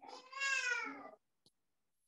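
A cat meowing once: one long call of about a second that rises and then falls in pitch.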